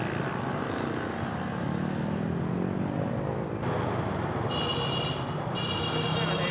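Motorbike and scooter traffic running on a street, with engine rumble and tyre noise throughout; an engine rises in pitch about two seconds in. From about halfway through, a steady high-pitched tone sounds over the traffic.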